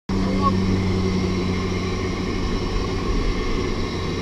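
Steady low drone of a skydiving jump plane's engine and propeller, heard from inside the cabin.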